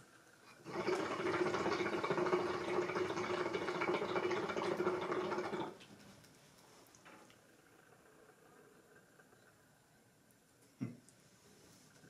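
Hookah water bubbling steadily for about five seconds as a long draw is pulled through the hose, then stopping abruptly. A single sharp click comes near the end.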